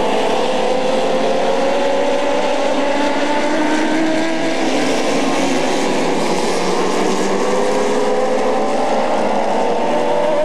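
A pack of dwarf race cars running at speed together, several engines blending into one loud, steady sound. Their pitches slowly rise as the cars accelerate down the straight.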